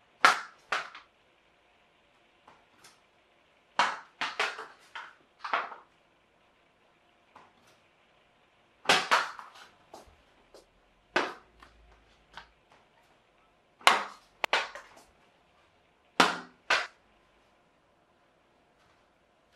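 A series of sharp, loud knocks or clacks, mostly in quick pairs about half a second apart, coming every few seconds, with quiet room tone between them.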